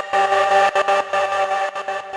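Mayer EMI MD900 virtual-analog synthesizer playing a sustained pad chord, several held notes sounding together, its level flickering with many quick dips.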